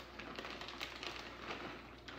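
Faint light ticking and rustling as shredded cheese is shaken from a plastic bag onto a pan of creamy pasta.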